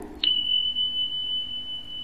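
A click, then a steady high-pitched electronic beep held for nearly two seconds before cutting off.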